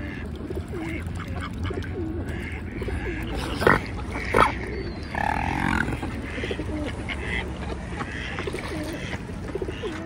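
A close flock of mallard ducks and mute swans calling: many short quacks and calls overlapping throughout, with two sharp knocks a little before the middle.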